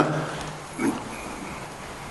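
A pause in a man's amplified speech. His last word fades, a single short throaty breath sound comes just under a second in, and then there is only faint room tone.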